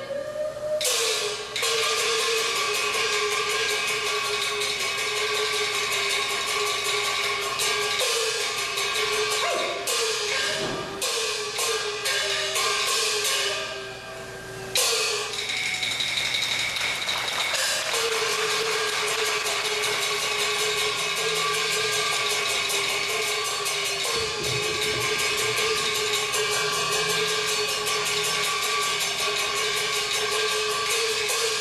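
Taiwanese opera percussion accompaniment for a staged fight: fast, continuous strikes of drums, cymbals and wood block over a held melodic tone that bends upward at several points. The music thins out briefly around the middle, then comes back with a loud crash.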